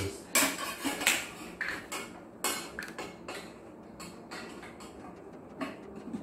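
A metal rod clinking and scraping against a hollow plastic tricycle frame as it is pushed through the frame's rear holes and the frame is handled: a run of sharp clicks and knocks, busiest in the first half and thinning out toward the end.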